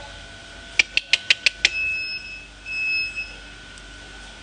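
Electronic beeping: a quick run of about six short sharp chirps, then two longer steady high-pitched beeps, over a faint steady high whine.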